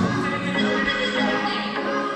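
Dance music played loud over a sound system, its heavy beat dropping out at the start, leaving held melodic tones.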